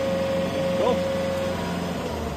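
Commercial ride-on mower's engine idling with a steady low hum, and a steady whine over it that stops about three-quarters of the way through.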